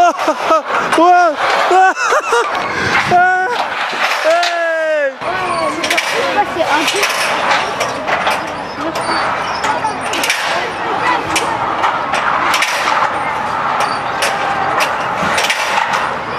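A man whooping and laughing in long rising and falling cries. About five seconds in, this gives way to a steady clattering rattle with many small clicks: the wheels of a hand-held trolley rolling along an overhead steel rail.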